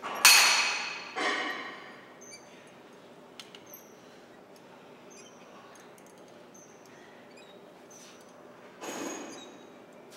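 A man exhaling hard on cable crossover reps: two loud breaths just after the start and another near the end. Between them, a few light metallic clinks come from the cable machine.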